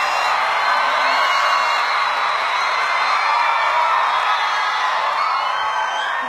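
A concert audience cheering and screaming, with high-pitched shrieks over a steady wash of many voices.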